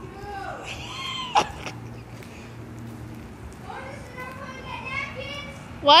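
Indistinct voices of several people talking and calling out in the background, with a sharp knock about a second and a half in and a loud shout of "What?" at the very end.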